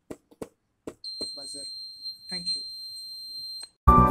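Piezo buzzer of a car anti-theft circuit sounding one steady high-pitched beep for about two and a half seconds, starting about a second in, after a few light clicks. Loud music cuts in at the very end.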